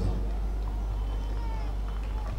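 Pause in speech over a public-address system: a steady low electrical hum under a faint crowd murmur, with a few faint, high gliding calls.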